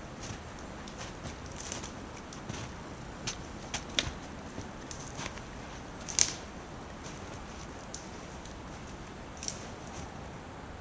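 Footsteps crunching in snow, a few irregular crunches rather than a steady pace, the sharpest about six seconds in, over a steady faint hiss.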